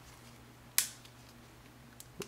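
A single sharp click a little under a second in: the snap-on hard case for a Motorola Droid X snapping into place on the phone.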